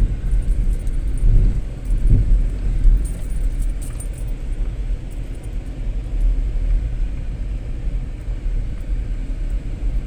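Car driving slowly along an unpaved road, heard from inside: a steady low engine and road rumble with faint scattered clicks and rattles.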